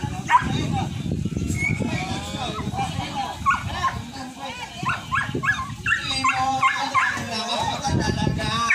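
Dogs barking and yipping in a string of short calls, busiest in the second half, with people's voices mixed in.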